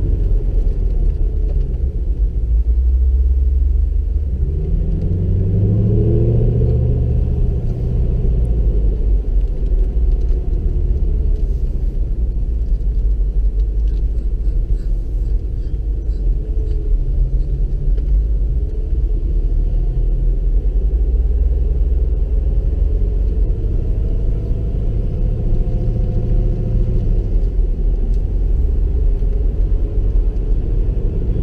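Mercedes-Benz SLK 55 AMG's V8 engine rumbling at town speed, heard from a dashcam on the car, with tyre and road noise underneath. The engine note rises in pitch twice, early on and again near the end, as the car pulls away and accelerates.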